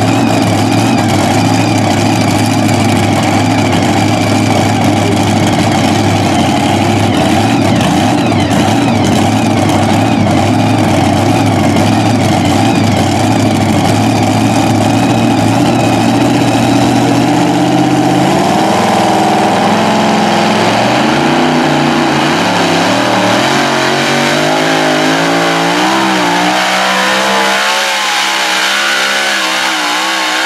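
Supercharged engine of a two-wheel-drive pulling truck, running loud and steady at idle. From about two-thirds of the way in, the engine note starts rising and falling as it is revved.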